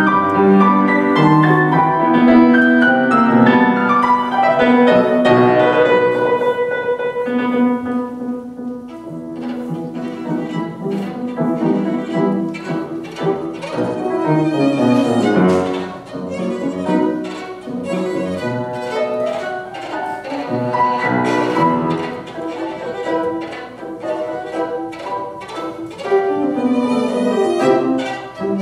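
Violin played with grand piano accompaniment, a piece of classical music; it is louder for the first several seconds, then softer.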